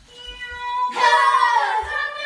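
A voice holds a steady pitched note, then about halfway through a louder sung note slides downward in pitch.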